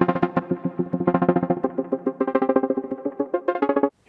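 Eurorack modular synthesizer playing a sequenced patch: three oscillators through a low-pass filter, shaped into short plucky notes in a quick repeating pattern, with a second delayed envelope giving a slapback or ratchet-like double hit. The sound cuts off abruptly just before the end.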